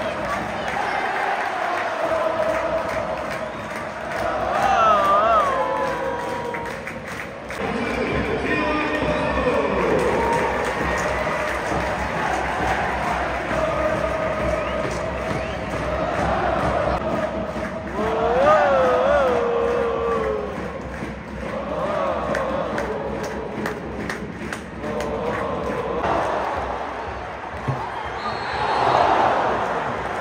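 A stadium crowd of football supporters singing and chanting together: a mass of voices carrying a wavering tune over steady crowd noise, with swells of louder singing and cheering.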